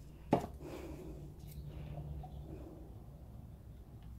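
A single sharp knock from handling paint pots a third of a second in, followed by faint handling and scraping sounds as paint is scooped from a pot with a stick, over a low steady room hum.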